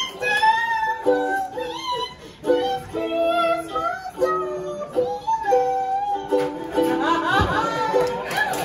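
A woman singing to her own ukulele accompaniment, a melody of held notes over strummed chords.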